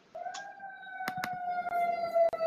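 A held, whining tone that sinks slightly in pitch and grows louder, broken by scattered sharp clicks.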